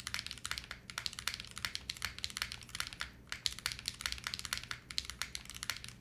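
Fast typing on a gasket-mounted Retro 66 custom mechanical keyboard with KTT Rose switches: a dense, even run of key clacks with a brief pause about three seconds in. The spacebar strokes among them are, to the builder, suffering from a case mounting point right underneath the spacebar.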